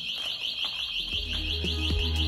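A high-pitched, rapidly warbling electronic alarm sounds steadily, with background music and a bass beat coming in about a second in.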